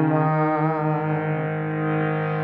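A harmonium holds a steady chord while a male voice finishes the sung word "Ma", the held note dying away shortly after the start; the harmonium then sounds on alone.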